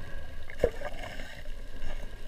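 Water sloshing and lightly splashing, with one sharper splash about two-thirds of a second in.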